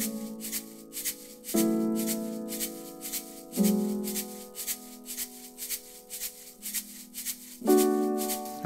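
Track playback of chopped piano-sample chords, held and changing about every two seconds, with a hand shaker shaking in a steady rhythm over them.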